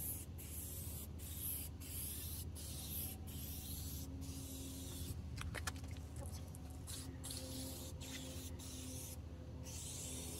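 Aerosol spray can hissing in a series of short bursts with brief pauses, a longer pause near the end, as clear coat is sprayed onto a car's lower body panel.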